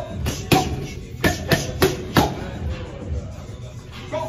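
Boxing gloves smacking into focus mitts in quick combinations: two sharp hits, then four more, all within the first couple of seconds, over background music.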